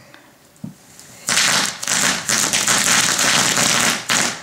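A firework going off: about a second in, a loud, dense crackling rush breaks out and keeps going for nearly three seconds.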